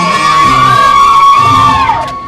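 One long, held whoop from a cheering voice, falling off near the end, over the last of the background music, which drops away about halfway through.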